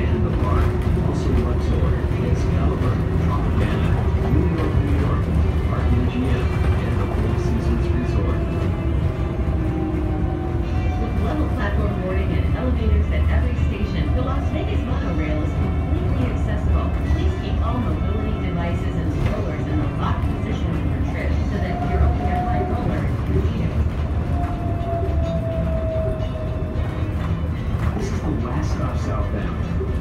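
Cabin noise inside a moving Las Vegas Monorail car: a steady low rumble with a motor whine that slides up and down in pitch.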